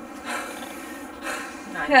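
Soft breathy laughter and voices, with a louder voice breaking in near the end.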